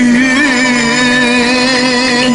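Cantonese opera music: one long held note that wavers slightly near the start, sounding over the accompanying ensemble.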